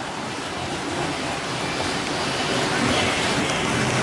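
Steady rush of pool water churned by underwater bubbling jets, with water pouring from clay-jar spouts into the pool.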